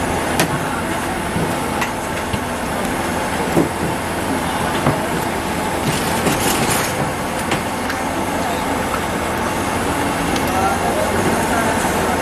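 Steady busy-street noise of traffic and indistinct voices, with scattered clicks and a brief hiss about six seconds in.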